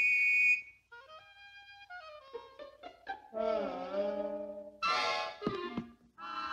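Orchestral cartoon underscore led by woodwinds: a brief loud high note, then a stepping descending line, then a held, wavering chord, with a bright accent near the end.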